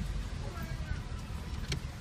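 Road noise heard inside a moving car: a steady low rumble of engine and tyres, with faint voices and a single sharp click near the end.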